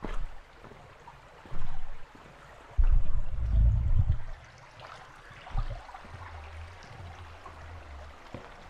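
A shallow stream running over rocks, a steady rush of water. It is broken by several low rumbling bursts on the microphone, the longest about three seconds in.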